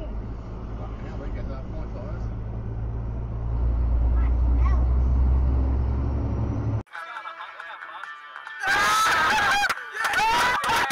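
Low, steady engine and road hum in a car cabin, recorded by a dashcam. It grows louder a few seconds in, then cuts off abruptly. After the cut, loud pitched sounds with rising and falling tones fill the last second or so.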